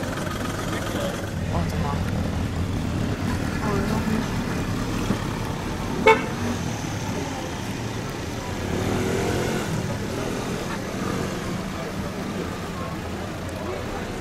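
Street sound of a steady low traffic rumble under background voices, with one short car horn toot about six seconds in, the loudest sound.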